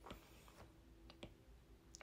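Near silence with a few faint clicks of a stylus tapping on a tablet screen while drawing.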